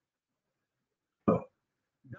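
Dead silence, broken about a second in by a single short vocal noise from a man, over in a fraction of a second.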